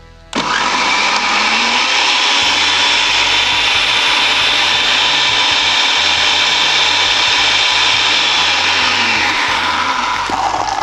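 Countertop blender starting abruptly and running steadily at high speed, chopping a thick load of fresh parsley and coriander in olive oil with no water added. Its low-set blade struggles with the thick mix.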